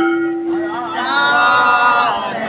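Temple aarti music: voices singing a devotional hymn together, with a steady held note at the start giving way to a sustained sung line about a second in, over the quick repeated ringing of a hand bell.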